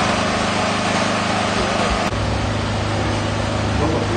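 A motor engine idling, a steady low hum; the hum changes abruptly about two seconds in and carries on as a similar steady drone.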